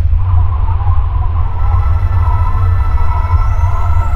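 The long, deep rumble of a nuclear explosion sound effect rolling on after the blast, with a faint wavering tone above it.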